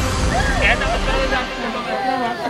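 A newscast's logo transition sound effect: a swoosh with a deep rumble that fades out about a second and a half in, with people's voices in the background.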